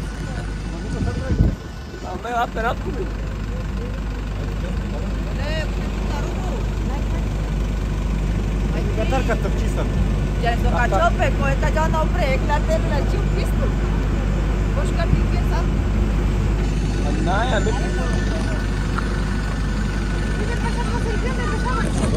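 Steady low rumble of idling engines that grows gradually louder, with scattered voices of people talking around it. There is a single thump about a second and a half in.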